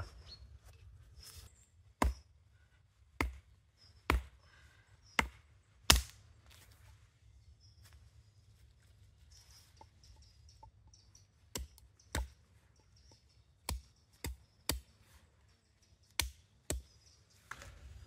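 Beavercraft AX1 hatchet striking a wooden stake: single sharp blows, about five hard ones in the first six seconds, then after a pause a run of about seven lighter strikes.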